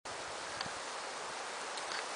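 Steady outdoor background hiss, as of a light breeze in roadside trees, that cuts in abruptly; one faint click about two-thirds of a second in.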